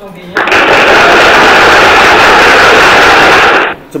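A loud presentation-slide sound effect: about three seconds of even, rushing noise that starts and cuts off abruptly, played as the slide reveals the answer.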